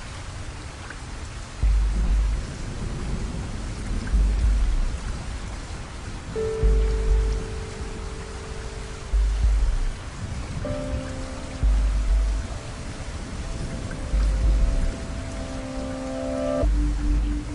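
Steady rain hiss under a slow music track: a deep bass hit about every two and a half seconds, with held chords coming in about six seconds in and again near eleven seconds.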